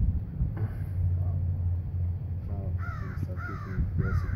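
A bird calling three times in quick succession near the end, each call a short, harsh, arching note.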